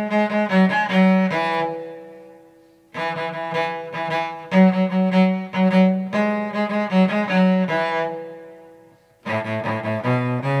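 Solo cello played with the bow in a four-sharp key: phrases of short, rhythmic bowed notes. Each phrase ends on a long held note that dies away, once after about two seconds and again near the end. A new phrase starts each time.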